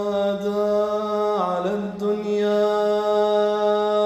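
A man's voice chanting an Arabic elegy in long held notes, the lamentation recited in a Muharram majlis. The pitch dips and bends briefly about a second and a half in, then settles into one long sustained note.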